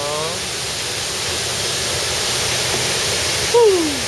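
Wide waterfall, the steady rush of water pouring over a broad rock ledge into a pool. A brief falling vocal cry cuts in near the end.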